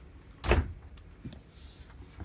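An interior door of a motorhome thumping once about half a second in, followed by a light click about a second in.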